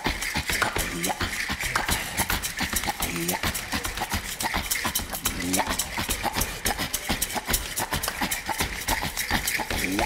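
Rapid body-percussion performance: a hand drum played with quick strokes, mixed with dense mouth clicks and the jingling of a dancer's dress as she moves. Short vocal whoops come every couple of seconds.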